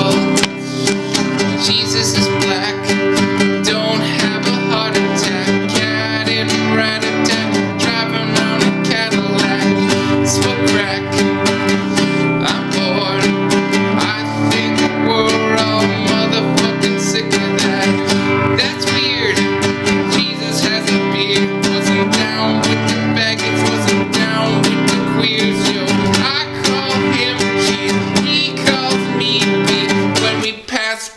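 Classical nylon-string acoustic guitar strummed in a steady, rhythmic chord pattern.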